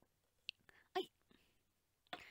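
Near silence broken by a woman's brief, soft vocal sound about a second in, like a murmur or whisper, with a few faint mouth clicks around it.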